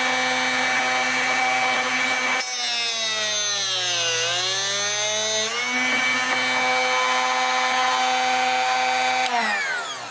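Drill Doctor 500X drill bit sharpener's motor running steadily with its diamond wheel grinding a split point on a twist drill bit. Its pitch dips for about three seconds in the middle, the motor slowing as the bit is pressed against the wheel, then recovers; near the end the motor is switched off and winds down.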